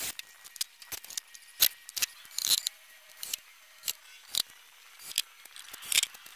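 Scattered sharp clicks and light knocks, about a dozen at irregular intervals: wooden pieces and a cordless drill being handled while the OSB box is fitted together.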